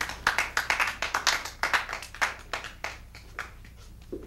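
A small audience applauding at the end of a poetry reading: separate hand claps, thick at first, then thinning out and dying away about three and a half seconds in.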